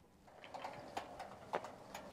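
Faint clicks and light rattling of a metal gate latch worked by hand as the gate is opened, with three sharp clicks in the second half.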